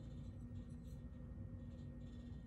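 Quiet room tone: a faint, steady electrical hum with no distinct events.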